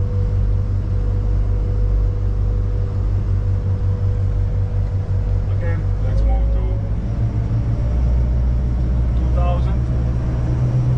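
Twin Volvo Penta D4 270 hp diesel engines running steadily at about 1,500 RPM, heard from the helm as a low drone with a steady whine above it. About seven seconds in, the drone deepens and shifts.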